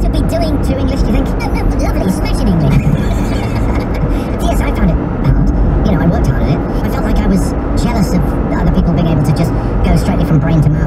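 Car cabin noise while driving at about 35 mph on a wet road: a steady low rumble of engine and tyres, with a radio voice talking over it.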